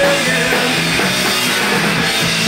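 A punk rock band playing live, with distorted electric guitars, bass and a drum kit, heard loud and steady as recorded from the floor of the hall.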